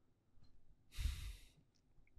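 A person's single short sigh about a second in, with near silence around it.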